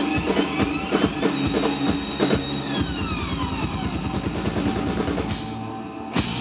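Live rock band playing: rapid drum hits and rolls under electric guitar notes sliding up and down in pitch. The sound thins out and gets quieter near the end.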